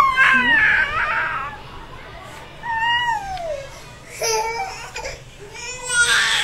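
Baby fussing with a few high-pitched, whiny, half-crying calls: a longer one at the start, a falling one about three seconds in, and short ones near the end.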